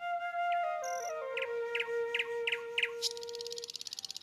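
Background flute music that settles on one long low note, with five short bird chirps about a second apart in the middle and a fast buzzing trill of bird song near the end.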